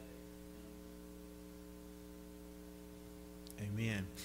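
Steady electrical mains hum, a low buzz with a stack of even overtones that holds unchanged. A man's voice cuts in about three and a half seconds in.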